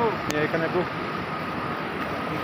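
Steady rush of river water running over rocks.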